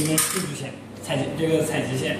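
A man talking, with one brief metallic clink just after the start.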